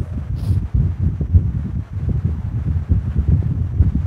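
Low, uneven rumble of air noise on the microphone, with a brief faint hiss about half a second in.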